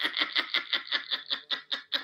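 A woman laughing hard, a quick even run of breathy laugh pulses, about seven a second.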